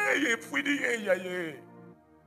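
A man's voice speaking animatedly through a microphone over a sustained background chord; the voice stops about one and a half seconds in, leaving the held chord fading out.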